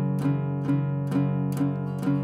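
Acoustic guitar playing an F-sharp power chord on the two low strings, second fret of the sixth string and fourth fret of the fifth string, in steady pick down-strums about two a second, four strokes here, the same chord each time.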